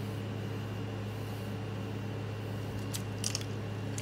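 A steady low electrical-sounding hum with a buzz in it, with a brief rustle about three seconds in.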